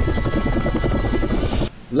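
Helicopter rotor sound effect, a fast, even chopping pulse, laid over jingle music; it cuts off abruptly near the end.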